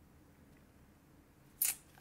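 Faint room tone, then one short, sharp noise about one and a half seconds in.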